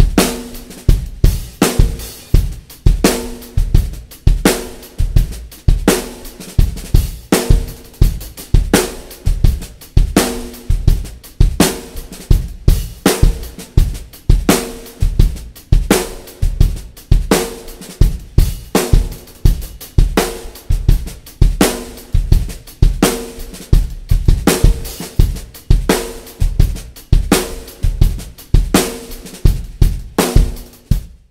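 Drum kit played in a steady repeating groove: kick drum, hi-hat and cymbals with a 14x5.75 Evetts Tasmanian Blackwood snare drum tuned low. Many of the hits ring on with a low tone.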